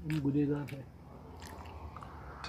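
A man speaks a couple of short words, then faint mouth sounds of eating and sipping tea from a mug.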